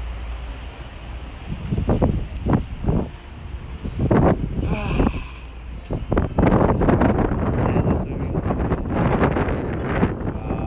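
Wind buffeting a phone microphone in irregular gusts, with a constant low rumble underneath.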